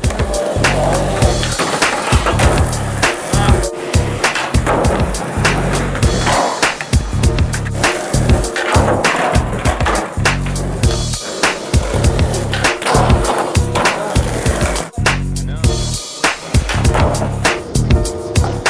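Skateboards rolling on concrete and knocking onto low wooden boxes, under music with a steady beat.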